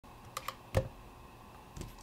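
A Rubik's-style speedcube being handled: a couple of quick light clicks, then one louder knock, and a softer one near the end.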